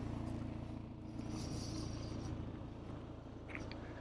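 BMW 430i's B48 turbocharged inline-four idling steadily through its M Performance exhaust: a low, even hum with no revving.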